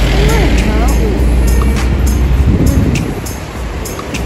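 A bus passing close by, its engine and tyre rumble heavy for the first two and a half seconds and then falling away as it moves off. Music with a steady ticking beat runs over it.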